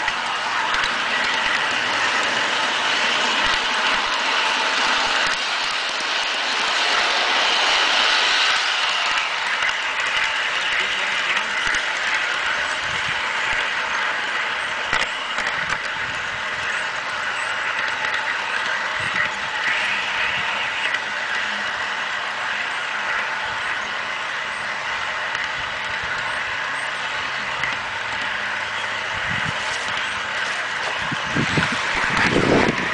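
Garden-scale model train running along its track, heard from on board: a steady mechanical whirr of gearing and wheels on the rails, louder for the first eight seconds or so.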